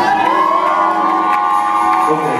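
Congregation cheering and shouting in answer to a call-out, with high held whoops that rise at the start and hold for almost two seconds before breaking off near the end.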